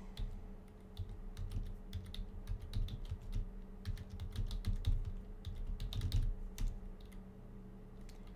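Typing on a computer keyboard: a run of irregular keystrokes as a terminal command is typed out, over a faint steady hum.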